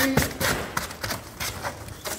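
A large self-erecting corrugated cardboard shipping box being folded up by hand: the cardboard panels and flaps rustle, scrape and knock together in a quick irregular series of thuds.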